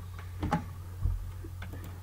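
A few scattered computer keyboard keystrokes, one of them a duller thump, over a steady low hum.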